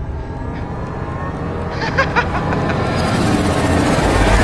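Film sound design: a low rumbling drone that swells into a rising noisy rush toward the end, with a brief voice-like fragment about two seconds in.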